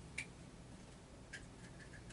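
Faint room tone with a few small, sharp clicks at irregular spacing: the loudest about a quarter second in, another past halfway, and lighter ticks near the end.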